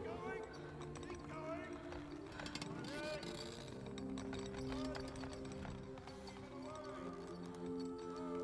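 Film soundtrack: a score of long held notes over indistinct background voices, with scattered knocks and creaks from a wooden lifeboat being lowered on rope falls through davit pulley blocks.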